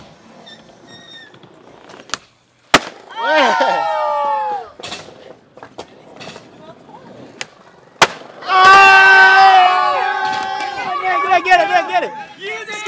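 Skateboard cracking sharply on the ramp twice, nearly three seconds in and again at about eight seconds. Each crack is followed by a group of onlookers crying out, first in short falling shouts, then in loud, drawn-out yelling.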